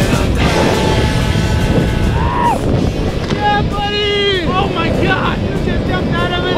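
Wind rushing and buffeting over the microphone of a camera held in the air during a tandem skydive at parachute opening, with music and wordless voiced cries over it.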